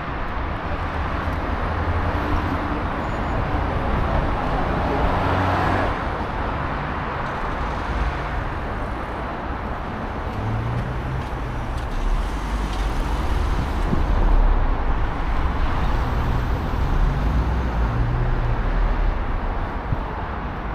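City street traffic: cars running and passing close by, a steady wash of tyre and engine noise with a low engine rumble underneath, swelling a little at times.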